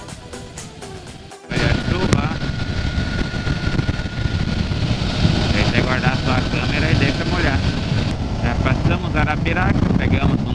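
Background music, then about a second and a half in a cut to the loud rush of wind and engine from a motorcycle riding at highway speed, with a steady whine through it.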